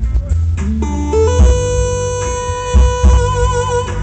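Live R&B band playing a slow ballad: drums, bass, keyboards and electric guitar, with a lead line holding one long note for about two and a half seconds that wavers at its end.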